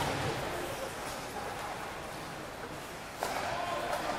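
Ice hockey play on a rink: skates scraping the ice, with sticks and puck knocking faintly. A distant voice calls out about three seconds in.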